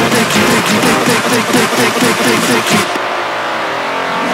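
Electronic dance music: a fast synth line of short notes with quick pitch bends over a busy beat. About three seconds in, the top end drops away and the sound thins out.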